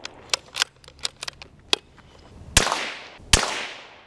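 Marlin .22 rimfire rifle fired twice, about three-quarters of a second apart, a little past halfway through; each sharp crack trails off in a long echo. A few faint clicks come before the shots. The shots are a test group fired after four clicks of left windage on the scope while sighting in.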